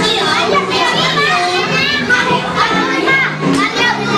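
Many children's voices shouting and chattering over each other, over music playing underneath.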